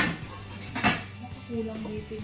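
Wooden pestle striking in a wooden mortar, pounding cooked cassava soft: two sharp knocks a little under a second apart.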